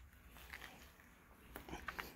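Near silence: a faint steady low hum, with a few soft ticks in the second half.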